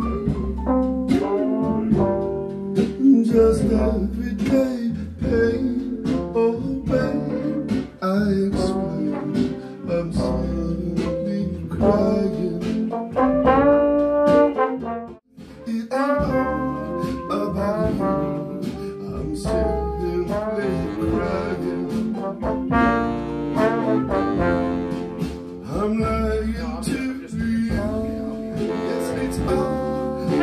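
A horn section of trumpet, tenor and baritone saxophones and trombone playing an arrangement together, with a short break about halfway through.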